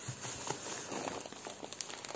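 Plastic bags rustling and crinkling as a bag of granules is pulled out of its wrapping, with small irregular clicks.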